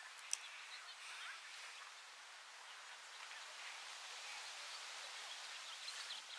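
Faint outdoor ambience with small birds chirping now and then. A single sharp click comes about a third of a second in.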